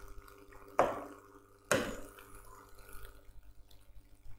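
Two short taps, the first about a second in and the second a second later, each with a brief ringing tail, over a faint steady electrical hum.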